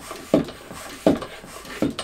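Floor pump inflating a bicycle tyre: three pump strokes at an even pace, about one every 0.7 seconds, each a short rush of air.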